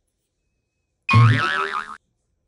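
A cartoon "boing" sound effect: it comes in suddenly about a second in with a low thud and a pitch that wobbles up and down, and it cuts off abruptly.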